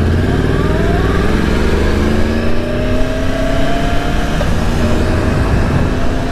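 Yamaha R1 inline-four motorcycle engine accelerating hard, its pitch climbing steadily, with a quick upshift about four seconds in before it climbs again.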